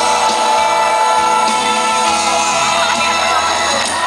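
Live band with electric bass and drums playing an instrumental passage with long held notes over a sustained bass line.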